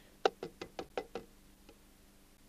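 A quick run of about six light knocks, roughly five a second, then one faint one: plastic kitchenware, a colander and bowl, being handled on the counter.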